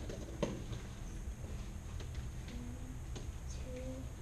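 Steady low room hum with a few faint, light taps and two short faint squeaks near the end.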